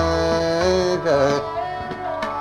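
A male ghazal singer holds a long note, then slides through a wavering ornament about a second in and settles on another note, over instrumental accompaniment.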